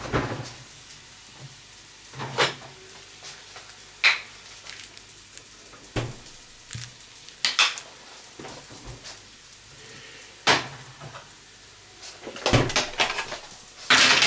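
Kitchen handling sounds: separate short knocks and clinks of dishes or utensils, one every couple of seconds, with a quick cluster of them near the end.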